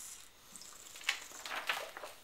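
A sheet of paper rustling as it is handled, with a few short crackles in the second half.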